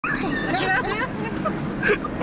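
Several people talking over one another inside a car's cabin, the words indistinct, with a steady low road and engine noise underneath.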